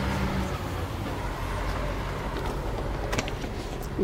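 A motor vehicle's engine running close by, a steady hum that drops away about half a second in, over a steady outdoor rumble of traffic. A couple of faint clicks come about three seconds in.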